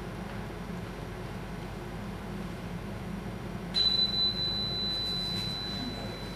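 A single high, pure ringing tone from a struck small piece of metal starts a little past halfway and holds, slowly fading, over a steady low hum.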